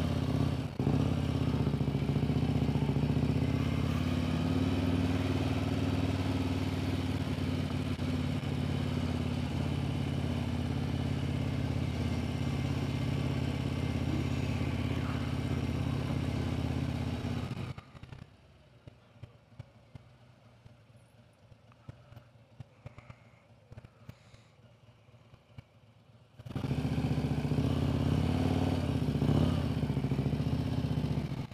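Touring motorcycle engine running steadily at low street speed, heard from the rider's seat. About 18 seconds in it cuts off abruptly to near silence with faint ticks, and the engine sound comes back just as suddenly about eight seconds later.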